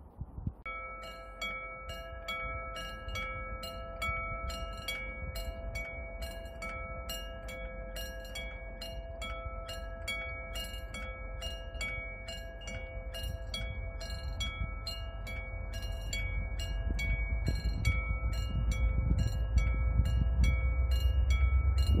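Level crossing warning bell ringing: an electronic chime struck over and over at an even, quick pace, starting about half a second in. Near the end a low rumble grows underneath as the diesel-hauled Mugunghwa train approaches the crossing.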